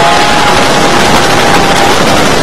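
Wooden roller coaster ride heard from inside the moving train: loud, steady rush of wind on the microphone and track rumble. Over it a rider holds one long, steady scream that stops near the end.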